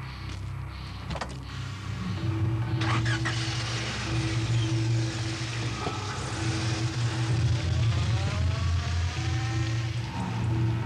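A car door shuts about a second in, then a car engine starts and runs, its pitch rising near the end as the car pulls away. Background music with a repeating note plays throughout.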